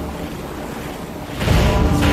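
Rushing-water sound effect in a trailer mix: a noisy wash that swells suddenly, about one and a half seconds in, into a loud surge.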